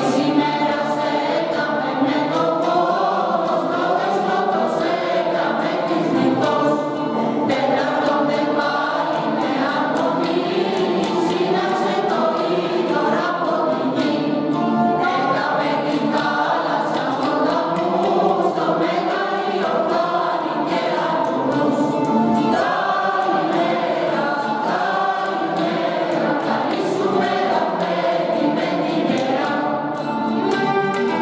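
Mixed choir of men and women singing a traditional Greek Christmas carol (kalanta) continuously, with oud and kanun accompaniment.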